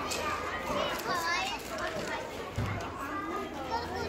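Several children's voices calling and shouting over one another, with no clear words, over a low steady hum.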